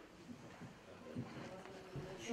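Faint steady electrical hum with a couple of soft thumps from a handheld microphone being handled as it is passed from one person to another.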